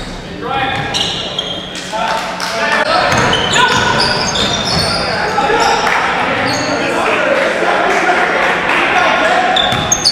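Live basketball play in a gym: sneakers squeaking on the hardwood court in many short, high chirps, the ball bouncing, and players' voices calling out, all echoing in the large hall.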